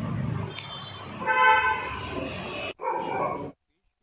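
Street background noise with a vehicle horn sounding once for under a second, followed by a shorter second toot. The audio then cuts off abruptly.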